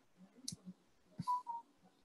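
A few faint, sharp clicks, about half a second and a second and a quarter in, with two short faint tones just after the second click.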